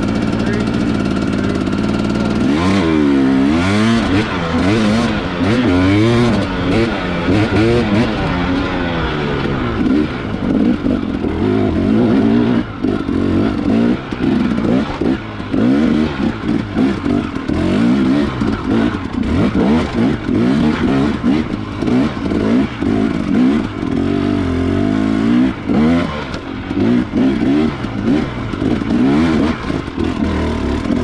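2018 Husqvarna TX300 two-stroke enduro bike engine, carbureted: a steady idle at first, then revving up and down over and over as it is ridden up a steep, rocky trail.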